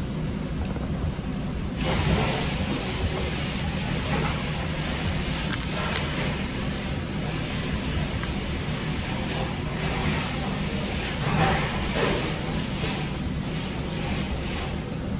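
Steady restaurant background noise: a constant low hum under an even hiss that gets louder about two seconds in. A few short clicks and brief rustles come through near the end.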